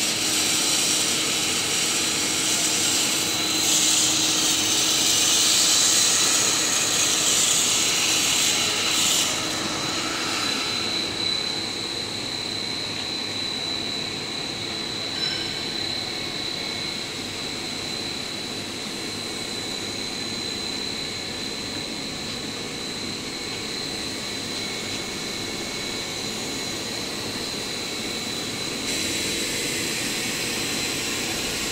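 Steady running noise of a PVC braided hose extrusion line, with a constant high-pitched whine throughout. For about the first ten seconds a louder airy hiss rides on top, then stops.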